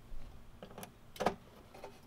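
Plastic wiring-harness connectors being handled and pushed onto a door operator's control circuit board: three short clicks, the loudest about a second and a quarter in.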